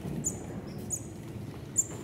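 Short, very high-pitched bird-like chirps, about one a second, the last one the loudest, over a low hush.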